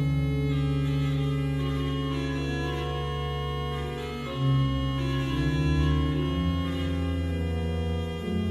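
Jean-Baptiste Micot's 1772 French Baroque pipe organ playing slow, sustained chords in several parts. The held notes change every second or so, and the sound swells briefly about halfway through.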